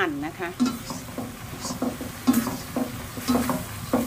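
Black slotted spatula scraping and stirring in a non-stick wok, in repeated strokes, while shrimp, green onions and roasted chili paste sizzle.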